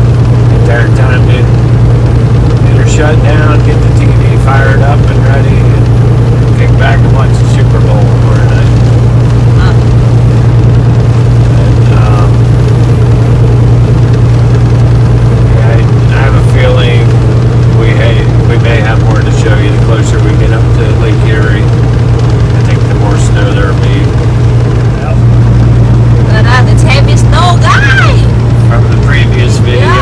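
Steady low drone of a semi-truck's diesel engine and road noise heard inside the cab at highway speed, with a person's voice going on over it throughout.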